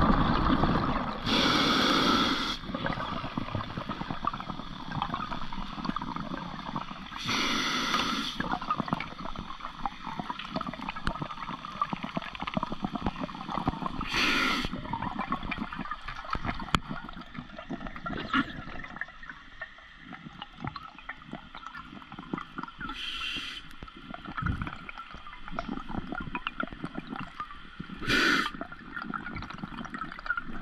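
Scuba diver breathing underwater through a regulator: five bursts of exhaled bubbles gurgling past the microphone, roughly every six seconds, over a steady underwater hiss.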